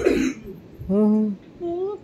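A toddler girl's voice: a rough, throat-clearing-like sound right at the start, then two short vocal sounds, the first about a second in and the second near the end.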